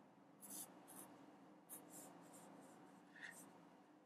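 Faint squeaky scratching of a Sharpie marker tip on paper: about seven short strokes as small squares are drawn.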